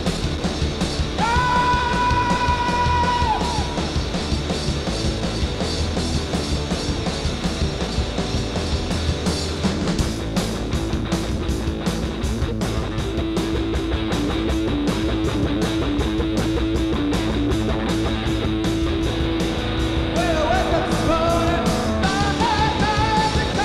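A live three-piece rock band plays an instrumental stretch: electric guitar on an early-1960s Gibson ES-345, with bass and drums, in a lo-fi recording. About a second in, a high note slides up, is held for two seconds, and drops away. From about ten seconds in, the drums drive a fast, steady cymbal beat.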